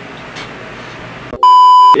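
A loud, steady electronic beep tone about half a second long, starting and stopping abruptly near the end, after more than a second of quiet room tone. It is the classic edited-in censor bleep laid over the speech.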